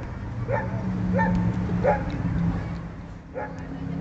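An animal's short whimpering yelps, four of them spaced about two thirds of a second apart, over a steady low hum.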